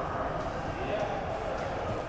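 Gym background noise: distant voices and a steady room hum, with no distinct clank or thud standing out.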